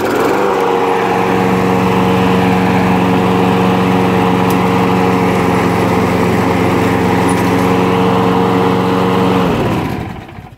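Craftsman walk-behind lawnmower's single-cylinder Briggs & Stratton engine, just started with its electric key starter, catching and rising to speed at once, then running steady. About nine and a half seconds in it winds down and stops.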